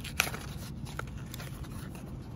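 Small cardboard product box being opened by hand: a sharp crack as the flap comes free just after the start, then light rustling of the card and a fainter click about a second in.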